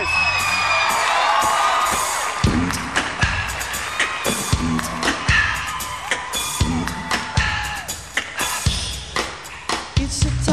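Studio audience cheering and whooping over the opening of a live band's song intro. About two and a half seconds in, a steady beat with bass comes in, pulsing roughly every three-quarters of a second.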